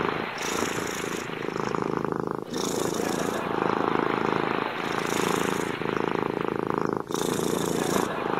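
Domestic cat purring loudly and close up, a continuous buzz that swells and changes with each in-and-out breath, about once a second.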